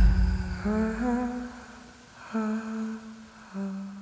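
Outro of the song: the band's last beat dies away, then a voice hums three long low notes, each shorter and fainter than the one before, fading out.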